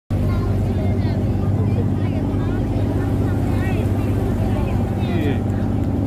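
A river boat's engine running with a steady low hum, with faint voices talking over it.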